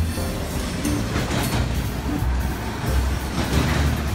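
Double-stack container freight train passing, its wheels running steadily on the rails, with background music over it.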